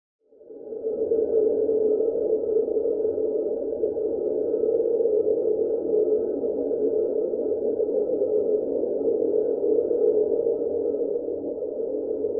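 A steady ambient drone that fades in quickly just after the start and holds unchanged, with two faint thin tones sounding above it.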